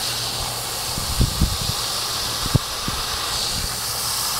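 Garden hose spray nozzle running, a steady hiss of water spraying onto wood-chip mulch around the base of a freshly planted perennial to soak its roots, with a few soft low thumps.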